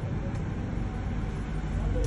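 Steady low rumble of background noise during a pause in speech.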